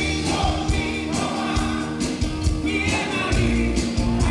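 A rock band playing live, with a male lead singer and backing vocalists singing together over electric guitar, electric bass and drums.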